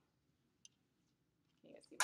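Near silence: room tone, with one faint click about two thirds of a second in and a faint sound starting near the end.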